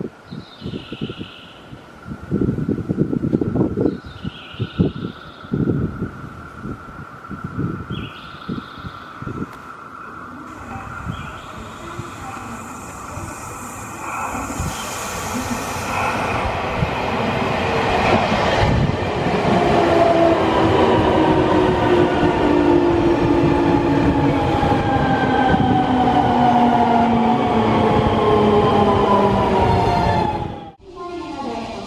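Electric commuter train approaching and pulling in: intermittent rumbling and knocks of wheels on the rails at first, growing louder, then the traction motors' whine falling steadily in pitch through the second half as the train slows.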